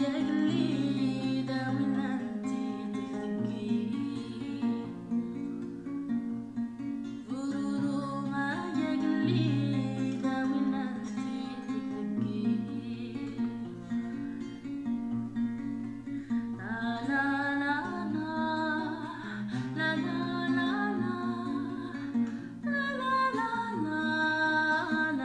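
A woman singing in phrases while accompanying herself on an acoustic guitar.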